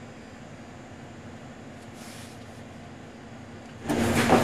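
Steady low background hum of a workshop, with a faint brief scratch about two seconds in.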